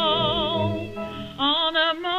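Music-hall song from an early 1930s recording: a woman singing with wide vibrato over accompaniment, a held note that dips briefly about a second in, then a rising phrase near the end.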